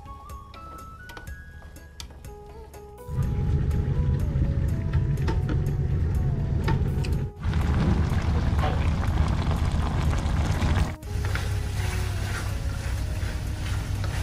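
Background music, then about three seconds in a loud frying sound starts: pork intestines sizzling in a hot pan, with a low rumble underneath, while the music carries on faintly. The frying sound breaks off for an instant twice.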